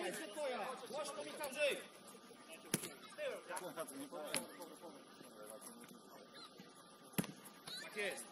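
Players' voices calling out on the pitch, with three sharp thuds of a football being kicked, about three, four and a half and seven seconds in.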